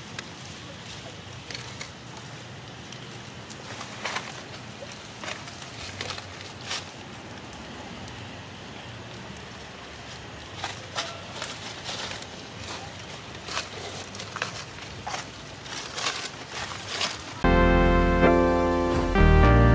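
Steady outdoor background hiss with scattered short, sharp clicks that come more often in the second half. Piano music starts suddenly just before the end.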